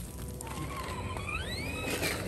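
Redcat Marksman TC8 RC crawler's 550 brushed crawler motor and gears whining as the truck drives off, the whine rising in pitch about half a second in and then holding steady.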